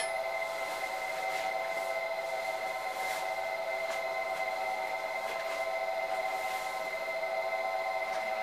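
Brushless DC motor of a homemade power hone spinning a 200 mm diamond disc, running steadily with a whine of several high tones.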